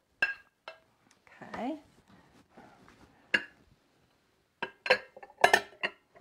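Kitchen dishes and utensils clinking while food is prepared: a few sharp, separate clinks with a short ring, then a quick cluster of them near the end.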